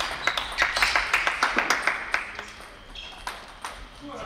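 A small group of spectators clapping for about two seconds, applause for the point that wins the game at table tennis, with a few sharp clicks at the start.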